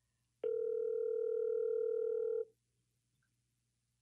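Telephone ringback tone of an outgoing call, heard through a phone's speaker: one steady ring of about two seconds, starting about half a second in.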